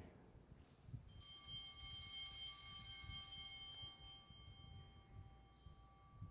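Altar bell rung at the elevation of the chalice after the consecration: a metallic ring starting about a second in, with several high overtones, that rings on and dies away over about three seconds.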